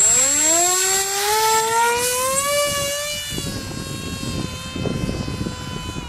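Small 1806-size, 2218 KV brushless motor spinning the propeller of a foam-board flying wing at a hand launch: a whine that rises in pitch over the first three seconds, then holds steady and grows fainter as the wing climbs away. Wind rumbles on the microphone underneath.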